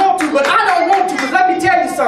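Hand clapping mixed in with a man's loud, animated speaking voice.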